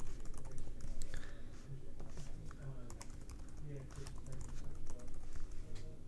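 Computer keyboard typing: a run of irregular keystroke clicks as a password is typed and then retyped to confirm it.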